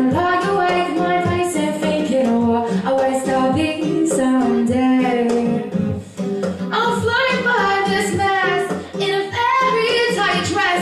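A woman singing into a handheld microphone, holding and sliding between notes, with an acoustic guitar played along.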